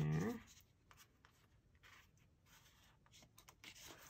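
Pages of a small paperback guidebook being turned by hand: a few soft paper rustles and light flicks, faint.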